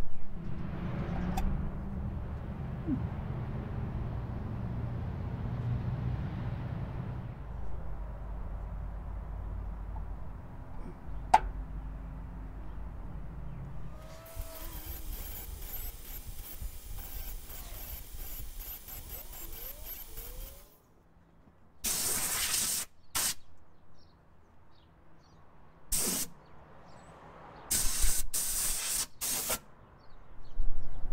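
Angle grinder with a cut-off wheel grinding down the flange of a steel head bolt that was binding against the distributor. It runs steadily for about six seconds midway, then in three short bursts near the end.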